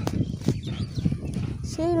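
Wind rumbling on a handheld phone microphone outdoors, with a couple of sharp knocks from handling or footsteps; a voice calls "Hey" near the end.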